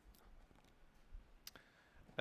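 Near silence in a small room, with two faint clicks: one just after the start and one about a second and a half in.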